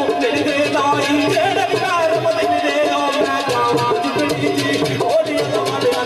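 Live Pothwari folk music of the kind that accompanies sung poetry: sitar and other plucked string instruments playing a melody over a steady percussion beat.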